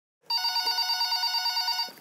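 A corded telephone ringing: a single ring with a fast, even trill, starting a moment in and cutting off just before the phone is answered.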